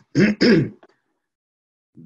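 A man clearing his throat: two short rasps in quick succession in the first second.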